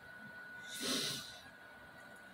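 A man's single short breath, a quick noisy puff of air about a second in.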